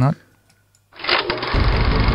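A short pause, then a segment jingle starts about a second in: dense, buzzy music with heavy bass joining about half a second later.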